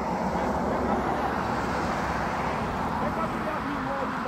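Steady outdoor background noise, a dense low rumbling hiss that begins abruptly, with faint distant voices in the last second.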